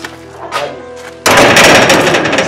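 Soft background music, then about a second in a sudden loud burst of fast rattling from a steel gate as its bolt is worked.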